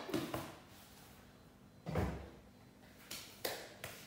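Light knocks and clatters of kitchen items being handled, with one dull thump about two seconds in.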